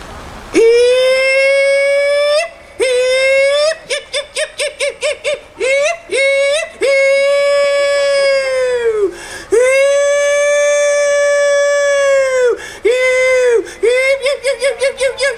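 A man hollering into a microphone in the traditional contest style. He holds long, high calls on one steady pitch, most ending in a quick upward flip. Early on comes a run of rapid yodel-like warbles, about six a second.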